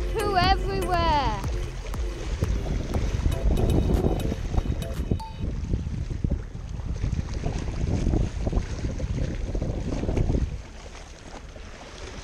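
Wind buffeting the microphone over small waves washing and splashing around the rocks of a breakwater. The rumble drops off suddenly about ten and a half seconds in, leaving a quieter wash of water.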